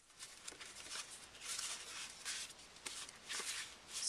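Stiff paper cards being slid out of their pack and fanned through by hand: several soft rustles and brushes of cardstock.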